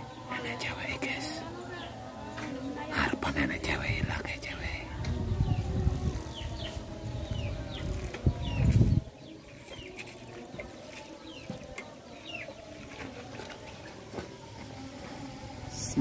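Small birds chirping repeatedly in short calls, with faint voices in the background. A low rumble builds over the first nine seconds and then stops suddenly.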